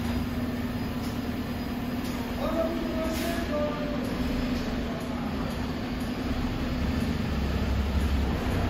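Volvo garbage truck with a Mazzocchia rear-loader body, its engine and hydraulic packer running with a steady hum and low rumble. Brief metallic squeals come in between about two and a half and three and a half seconds in.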